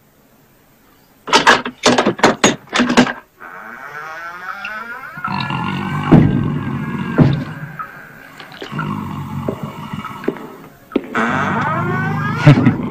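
A quick run of about six sharp clunks, like a door being unbolted and opened, followed by the busy sound of a nightclub: crowd noise with band music playing.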